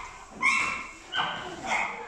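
A child's high voice imitating an animal, giving three short, high-pitched calls.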